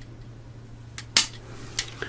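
Light clicks of a hard plastic miniature sprue and parts being handled: three short clicks, the loudest a little over a second in.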